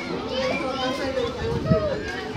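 Overlapping voices of a crowd of adults and children, with children calling and shouting as they play, none of it clear speech.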